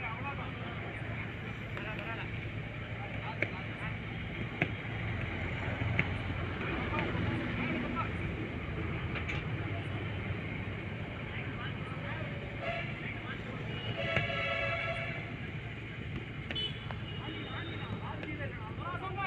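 Small-sided football match on artificial turf heard from beside the pitch: players' distant shouts and calls, with a few sharp knocks of the ball being kicked, over a steady low background hum. The longest shout comes about two-thirds of the way through.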